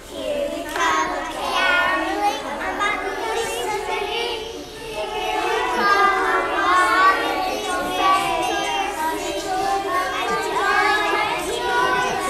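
A group of young children singing together, voices loud and a little ragged, with a short dip about four and a half seconds in.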